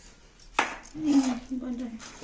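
Steel plate clanking once as it is set down on a stone counter, about half a second in, with a short ring after it.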